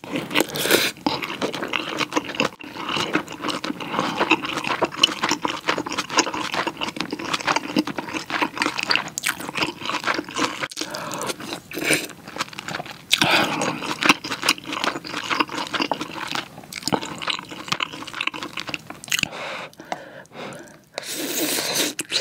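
Close-miked eating of rice and pork kimchi stew: wet chewing with a dense run of small crackles and clicks, pausing briefly near the end.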